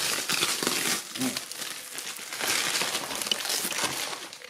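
Plastic packing wrap crinkling and crackling as hands pull and crumple it, in two busier stretches: the first second and from about halfway to near the end.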